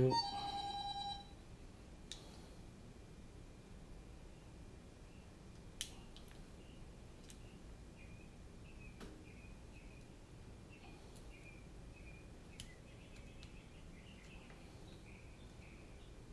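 A single electronic beep, one steady tone lasting about a second, right at the start. After it there is only faint room tone, with a few soft clicks from the soldering work and faint high chirps in the second half.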